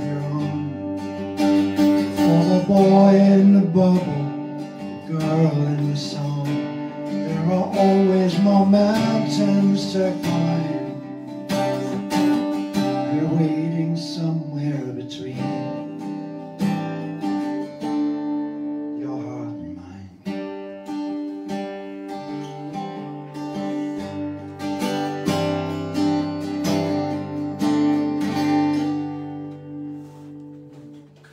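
Acoustic guitar played live and unamplified-sounding, a mix of strummed chords and picked notes, growing quieter near the end.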